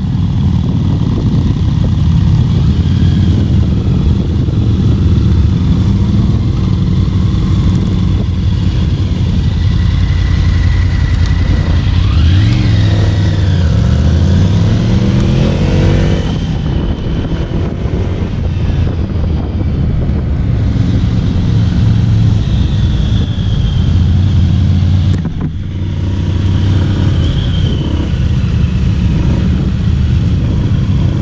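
Wind rush and engine noise from riding a Honda ADV 150 scooter among a group of motorcycles. About halfway through, several engine pitches glide up and down and cross as the bikes change speed. Near the end the noise dips briefly.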